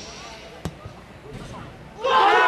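A single sharp thud of a football being struck for a free kick, about two-thirds of a second in, over faint voices.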